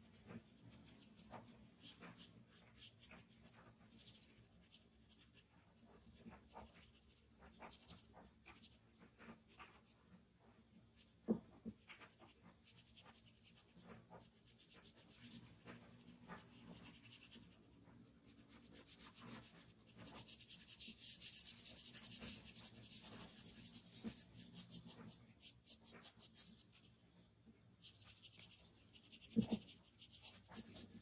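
Quiet, short scratchy strokes of charcoal shading and blending on drawing paper, with a louder stretch of steady rubbing about twenty seconds in that lasts some five seconds. Two brief soft knocks, one near the middle and one near the end.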